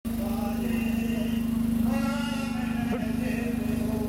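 An engine running steadily close by, a low hum with a fast, even beat. Over it, voices call out in long, drawn-out lines.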